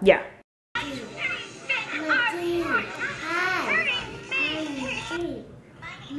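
A toddler talking and babbling in a high voice, a quick string of short syllables after a brief silence near the start.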